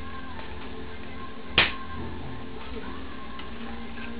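Background music with a steady hum underneath. About one and a half seconds in there is a single sharp click from a Makita HR2450 rotary hammer being handled while it is switched off.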